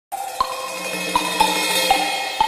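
News channel intro sting: electronic music with four sharp, bell-like metallic hits over a sustained shimmering tone.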